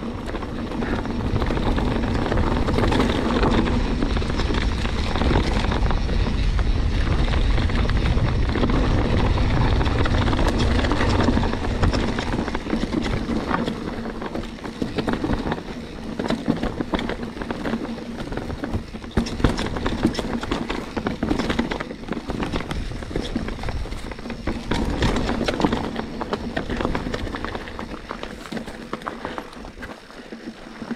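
Mountain bike riding down a rough, rocky dirt trail: wind rumbles on the microphone while the tyres crunch over dirt and stones. The wind is heaviest for the first dozen seconds, then the bike's frame, chain and components rattle and knock sharply over the rocks.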